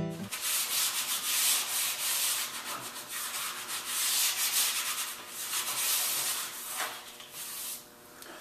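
Wet sanding a mahogany chair piece with sandpaper before its first coat of finish: irregular back-and-forth rubbing strokes that stop just before the end.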